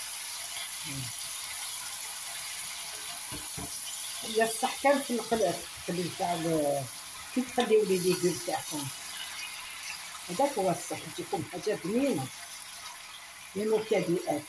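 Chunks of vegetables frying in oil in a stainless steel pot while they are stirred with a wooden spatula, with a steady hiss. A voice talks from about four seconds in and again near the end.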